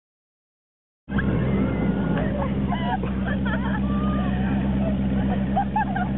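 A motor idling steadily with a low hum, cutting in suddenly about a second in after silence, with voices and laughter over it.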